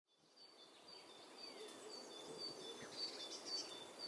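Faint outdoor ambience fading in from silence, with birds chirping: one repeats short high notes that alternate between two pitches about four times a second, and others call now and then.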